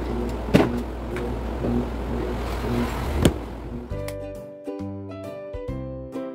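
Room noise with a steady low rumble and two sharp knocks of objects being handled on a table, then about four seconds in it gives way to background music with a light melody.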